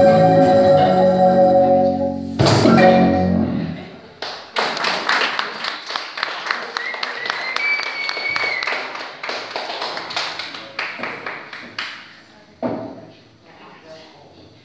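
A marimba ensemble finishes a piece with a final struck chord, followed by scattered clapping from a small audience with one rising whistle, the applause dying away after several seconds.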